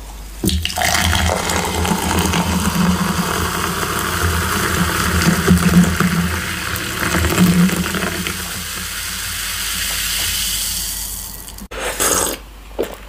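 Carbonated water poured from a can into a glass, pouring and splashing from about half a second in, with the fizz of bubbles growing stronger toward the end before it cuts off.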